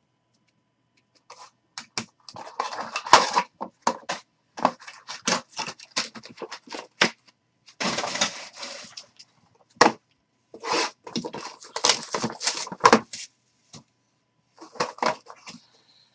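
Trading cards in hard plastic holders and a small cardboard box being handled: an irregular run of plastic clicks and knocks, with rustling and scraping as the box is opened.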